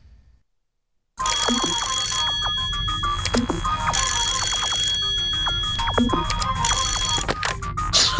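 The end music fades to silence. About a second in, a black rotary-dial desk telephone's bell starts ringing: two full rings about three seconds apart and a shorter third ring near the end, over light plucked music.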